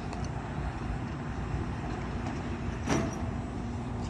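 Steady low rumble of outdoor road traffic and wind on the phone's microphone, with one brief faint sound about three seconds in.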